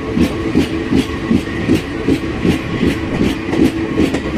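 Train running at speed, heard from aboard: the wheels click over the rail joints about three times a second over a steady running rumble.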